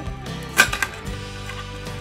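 Background music plays steadily, with a short rattle of clicks about half a second in from a plastic slinky's coils clacking together as it is stretched and let fall back between the hands.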